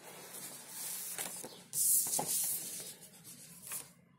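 Paper rustling and rubbing as a printed sheet is handled and moved, loudest for about a second near the middle, with a few small taps.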